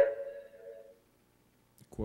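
The ringing tail of a loud noise fades out over about the first second, then dead silence, until a man's voice starts just before the end.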